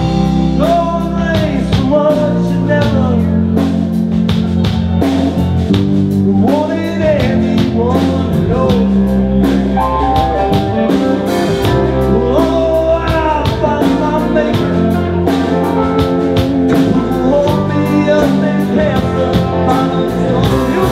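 A live band playing a song: a man sings lead over a strummed acoustic guitar and a drum kit keeping a steady beat.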